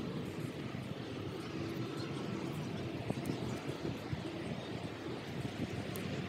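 Faint, steady low outdoor background rumble with a few soft ticks.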